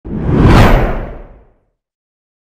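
Whoosh sound effect for a channel logo intro, with a low rumble under it, swelling to a peak about half a second in and fading out by about a second and a half.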